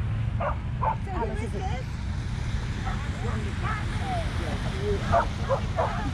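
A dog barking: two barks about half a second apart near the start, then three in quick succession near the end. Behind them are people's voices and a steady low rumble.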